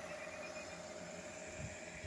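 Faint steady background noise with a low, even hum running through it: a short pause with no distinct event.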